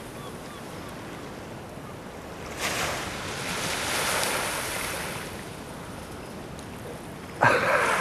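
Small waves washing onto a sandy beach, with wind on the microphone. The surf noise swells for a few seconds around the middle. Laughter breaks in just before the end.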